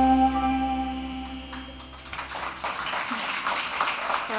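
A live band's final held chord, with a deep bass note underneath, dying away over about two seconds. Audience applause then starts up and grows louder.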